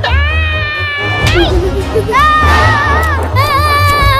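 Three long, very high-pitched squealing cries with a wavering pitch, the first at the start, the second about two seconds in, the third near the end, over background music with a steady bass beat.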